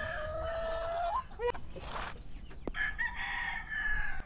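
Roosters crowing: a long crow ends with an upward flick about a second in, and a second, higher-pitched crow starts a little before the three-second mark and is held to the end.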